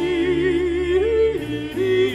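Baroque oratorio music performed live: one prominent singing voice with a wide vibrato holds long notes over strings and keyboard continuo, moving to a higher note about a second in.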